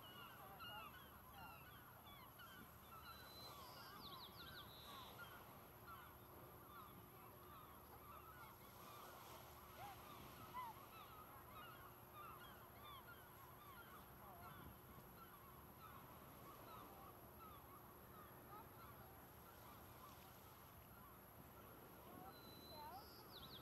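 A flock of birds calling continuously and faintly: many short overlapping calls, with one higher call about four seconds in.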